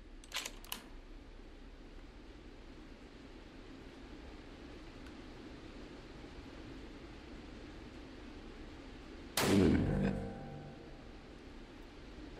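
A single unsuppressed supersonic 300 Blackout shot fired from a six-inch-barrel rifle: one sharp report about nine seconds in, with a ringing tail of about a second and a half in the indoor range.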